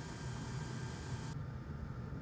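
Steady background hiss with a low hum, no distinct events; the upper part of the hiss cuts off abruptly about a second and a half in.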